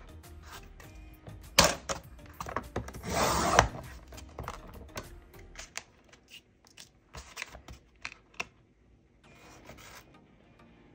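A sheet of shimmer vinyl handled on a plastic Cricut paper trimmer: a sharp click about a second and a half in, a short scraping swipe around three seconds in, then scattered light clicks and taps.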